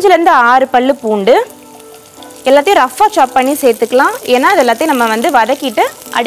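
Oil frying in a cast-iron pan as garlic cloves are dropped in. A louder melodic, voice-like tune that slides up and down in pitch runs over it, dropping out for about a second partway through.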